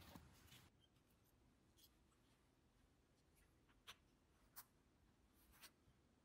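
Near silence: faint room tone with a few scattered faint clicks, the clearest two about four and four and a half seconds in.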